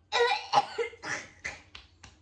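A girl coughing in a quick run of about five coughs, the loudest two at the start and weaker ones after, as she reacts to a food that has caught her throat.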